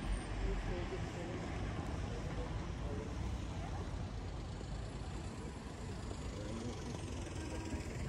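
Town-centre street ambience: a steady low rumble with faint, indistinct distant voices.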